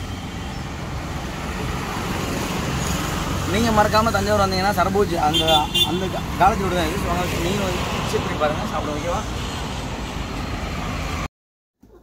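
Steady road-traffic noise from vehicles passing on the highway, a low continuous rumble that stops abruptly shortly before the end.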